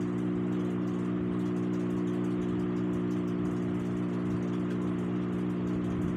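A steady machine hum made of several even low tones that do not change, over a soft even hiss.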